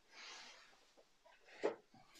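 Quiet handling noise at a work bench: a faint rustle or breath, then a single short tap or knock about a second and a half in as things are moved aside.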